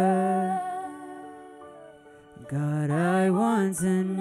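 Slow worship song: a man singing over acoustic guitar and bass guitar. A held note fades almost away about halfway through, then the singing picks up again with a rising and falling melody.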